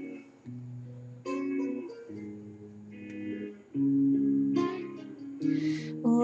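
Instrumental intro of a slow pop-ballad backing track: sustained chords changing about once a second.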